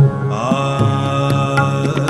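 Male Hindustani classical vocalist singing in raga Jog. He slides up into one long held note, with tabla accompaniment: a sharp tabla stroke right at the start and lighter strokes under the held note.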